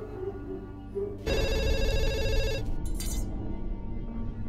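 Telephone ringing with a fast electronic trill, one ring of just over a second starting about a second in, over a low background music score.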